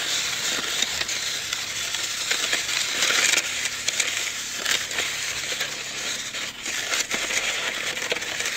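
Snow shovel blade pushed along the path, scraping through a thin layer of snow in a continuous rough, grating hiss with scattered small clicks.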